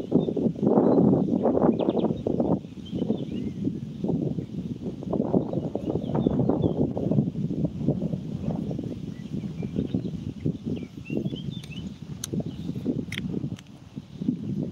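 Wind buffeting the phone's microphone in uneven gusts, over faint small-bird chirps, with two sharp clicks near the end.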